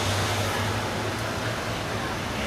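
Steady outdoor street background: a low traffic rumble with an even hiss of ambient noise, no distinct events.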